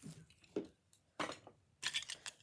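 Metal pinback buttons clinking and rustling as they are handled and set down among other pins on paper: about four short clicks.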